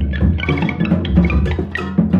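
Electric guitar, bowed viola and drum kit playing together live, with busy, irregular drum and percussion strikes over low held notes.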